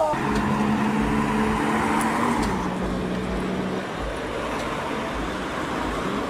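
Street traffic: a motor vehicle's engine running steadily close by, its pitch dropping slightly about two seconds in and fading out by about four seconds, over steady road noise from passing cars.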